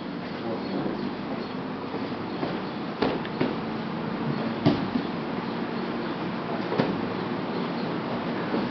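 Grappling on a training mat: several sharp thumps of bodies and hands hitting the mat, the loudest about halfway through, over a steady fan hum and general scuffling.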